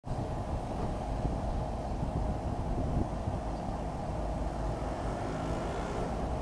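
Steady outdoor street noise: a low, even rumble of traffic with no distinct events.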